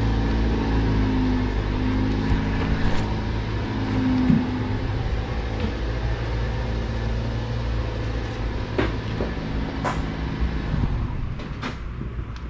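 A steady low hum from an engine idling, with a few light clicks and knocks over it. Part of the hum drops away near the end.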